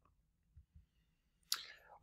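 Near silence in a small room, broken about one and a half seconds in by a single short, sharp click that fades quickly.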